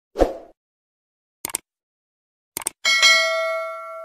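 Subscribe-button animation sound effects: a short pop, two quick double clicks like mouse clicks, then a notification bell ding about three seconds in that rings on and fades.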